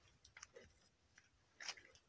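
Near silence with a few faint, short crunches of footsteps on a gravel road, the last one near the end a little louder.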